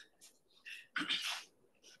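Short breathy noises from a man: a faint puff just past half a second and a louder, brief burst of breath about a second in.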